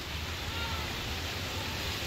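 Storm wind blowing through grapevine foliage: a steady, even rushing noise.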